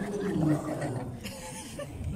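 A group of people laughing, with some talk mixed in, loudest in the first half second and then trailing off.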